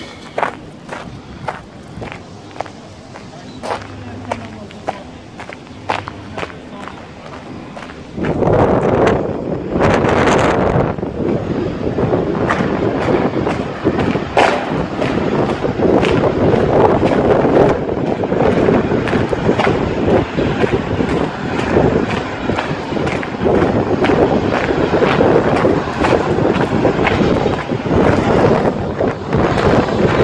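Footsteps on paving at a walking pace, about one step a second. About eight seconds in, a loud rushing noise of wind on the microphone sets in suddenly and covers them.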